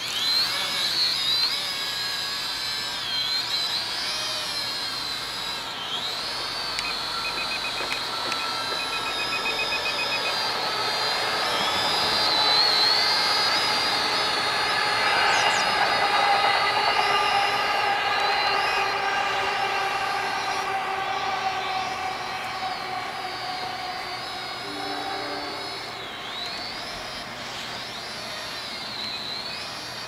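Holy Stone HS110 toy quadcopter's propellers spinning up suddenly and whining as it takes off and flies. The whine's pitch wavers up and down with throttle, and it grows a little fainter near the end as the drone flies higher.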